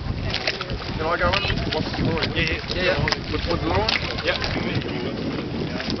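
Several voices talking over one another, with wind buffeting the microphone as a low rumble throughout and a few brief knocks.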